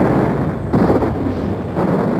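Battle explosions on a war-film soundtrack: a continuous heavy rumble, with a fresh blast about three-quarters of a second in and another near the end.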